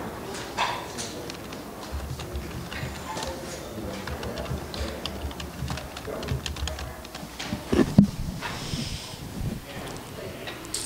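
Pool hall ambience: low background chatter with scattered clicks of pool balls, and one louder knock about eight seconds in.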